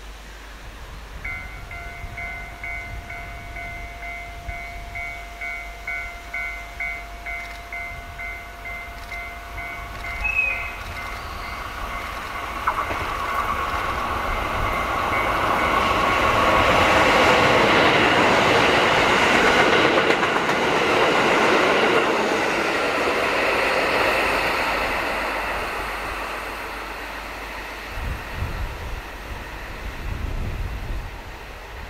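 KiHa 183 series 'Crystal Express' diesel multiple unit approaching and passing: its engine and wheel noise build to a peak about 17 to 20 seconds in, then fade as it runs away. Before it arrives, a railway level-crossing alarm rings in a steady repeating pattern, about two rings a second, stopping about 13 seconds in.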